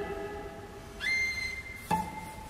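Two cellos playing contemporary music. A low note ringing on and fading, then about a second in a high, pure, whistle-like cello tone entering and holding steady. Near the end a new low note is sharply attacked.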